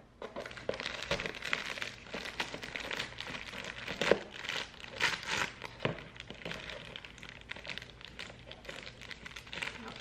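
Thin plastic packaging bag crinkling and rustling as it is handled and opened, with a few sharper crackles.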